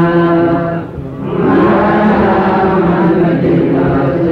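A voice chanting menzuma, Ethiopian Islamic devotional song, in long held notes; the line breaks off briefly about a second in and the next phrase rises in.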